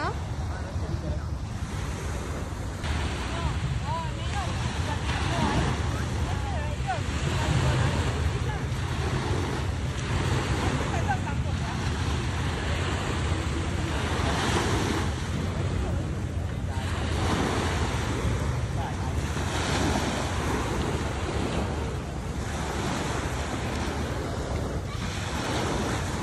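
Small waves washing onto a sandy shore in repeated swells every few seconds, with wind buffeting the microphone as a steady low rumble.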